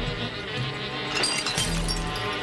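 Cartoon swarm of bees buzzing around a hive: a steady drone with background music underneath, and a brief flurry of sharper sounds about halfway through.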